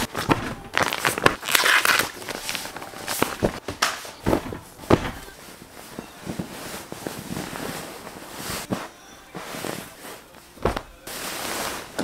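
Close-up rustling of fabric and crinkling of plastic packaging as new pillows and bedding are unwrapped and handled, with scattered sharp crackles and taps.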